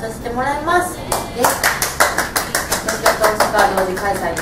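Two people clapping their hands in quick applause, about five claps a second. It starts about a second in, after a woman's voice, and runs on with voices underneath.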